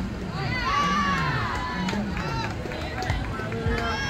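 Spectators and players at a youth softball game shouting and cheering. Several raised voices overlap in long calls during the first two seconds, then thin out to scattered shouts.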